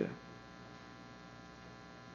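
Faint, steady electrical mains hum in the recording, after a man's last spoken syllable trails off at the very start.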